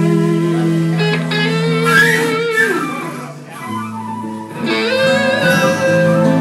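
Live blues played by a small band of guitars, with sustained lead notes that waver and slide in pitch. The band drops quieter about three and a half seconds in, then swells back up.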